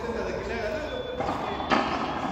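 Voices talking in the background, with one sharp smack of a hard frontón handball near the end.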